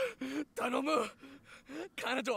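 A man's voice crying and gasping: a run of short sobbing breaths with a wavering pitch.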